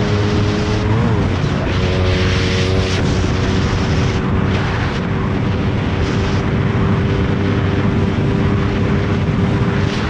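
Suzuki Raider 150 Fi motorcycle engine running at high revs at a steady speed on the open road, with wind rush over the microphone. Its pitch dips briefly and settles about a second in.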